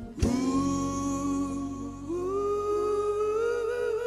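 Live pop band music: a drum hit at the start, then one long held note that steps up to a higher pitch about two seconds in and wavers near the end, over a steady low bass.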